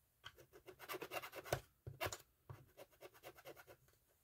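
The tip of a thin stick tool dabbed and scratched rapidly against a small black ink pad to load it with ink: a fast run of short scratchy taps that pauses briefly a little under two seconds in.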